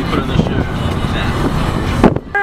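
Car driving along a road, heard inside the cabin: a steady low rumble of engine and tyre noise.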